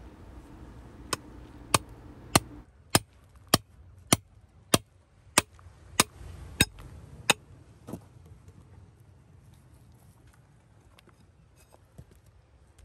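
Club hammer striking a steel chisel set into a shale slab, a steady series of about a dozen sharp metallic strikes roughly every half second or so, chipping a nodule free. The strikes stop about eight seconds in.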